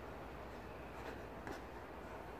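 Faint scuffing of sneakers on rubber playground tiles, with a couple of light taps about a second in, over a low steady background hum.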